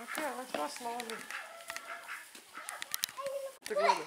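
Indistinct voices, with a short animal call near the end.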